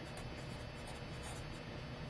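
Felt-tip marker writing on paper: a run of short, faint strokes.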